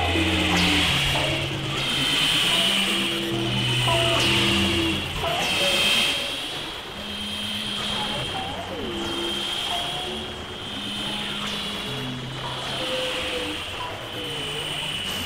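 Experimental electronic synthesizer music: low held notes stepping from pitch to pitch every half second or so, with sliding pitch glides above them and a steady high tone on top. It gets softer about seven seconds in.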